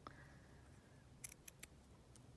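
Scissors snipping through ribbon: a few faint, quick snips a little past a second in.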